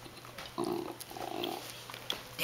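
Belgian Tervueren puppy growling low twice in quick succession, a rough rumbling growl: food guarding, warning other dogs off what it is chewing.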